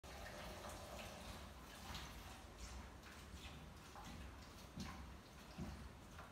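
Faint, irregular light knocks and clinks of kitchenware being handled at a sink, over a low steady rumble.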